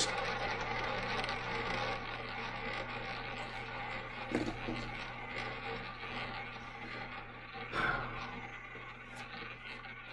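Roulette ball rolling around the track of a spinning double-zero roulette wheel, a steady rolling sound that slowly fades, with a light knock about four seconds in and a louder one near eight seconds.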